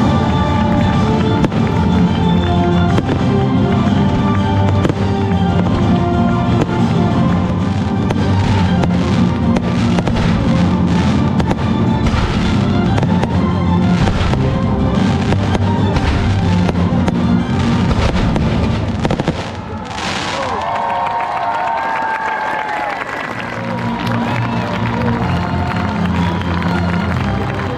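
Fireworks bursting over loud music, with a dense run of rapid bangs in the middle. After about twenty seconds the bangs stop and the music carries on.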